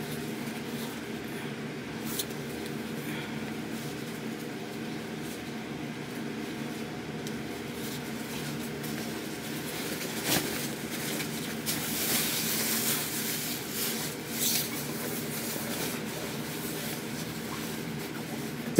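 Black shower cap being handled, with its fabric rustling and the strap's buttons clicking as it is tightened and pulled on, over a steady hum. There are a few sharp clicks, one about two seconds in and one about ten seconds in, and a stretch of louder rustling after the second click.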